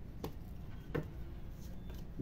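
Tarot cards handled on a hard tabletop: two light clicks of the deck against the table, about a second apart.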